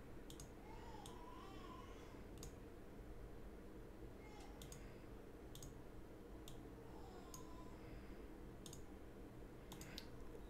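Computer mouse clicking: sharp, quiet single clicks at irregular intervals, about one a second, over a faint steady low hum.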